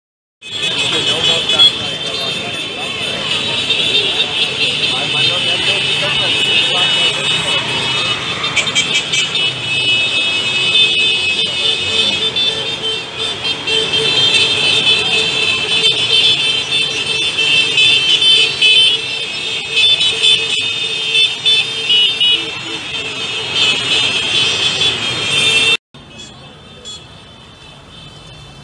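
Many motorcycle horns honking at once in a continuous, overlapping din over the running engines of a long line of small motorcycles. The din cuts off sharply near the end, leaving much quieter street sound.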